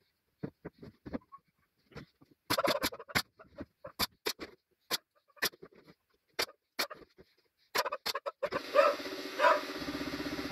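Pneumatic nail gun firing about a dozen sharp shots in quick, uneven succession, nailing a glued plywood-and-pine lid frame together. Near the end a steady motor hum starts up and keeps running: the air compressor cutting in to refill.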